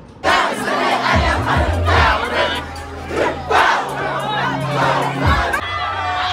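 A crowd of people shouting and cheering together, with music and a steady bass line underneath.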